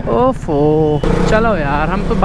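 KTM RC 200's single-cylinder engine running steadily while riding, under a person talking.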